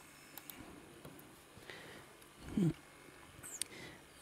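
Mostly quiet room, with a few faint clicks and one short, low voice-like sound about two and a half seconds in.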